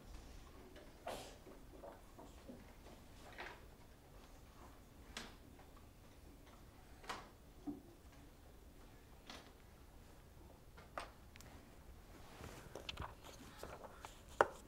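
Near silence with faint, scattered clicks and taps, about a dozen in all and more of them near the end: children taking crayons out and setting them down on their desks.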